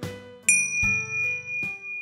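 A bell struck once about half a second in, ringing on as one clear high tone over soft guitar music.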